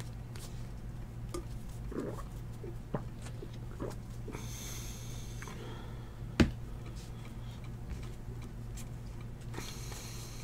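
Trading cards being handled on a desk: faint slides and taps, a short papery rustle about halfway through, and one sharp knock a little past six seconds in, all over a steady low hum.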